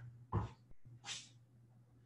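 Faint body movement on a yoga mat during a vinyasa transition. A soft thump comes about a third of a second in, then a short breathy exhale about a second in, over a steady low room hum.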